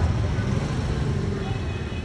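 Steady street traffic noise: the low rumble of motorbike and car engines passing along a city street.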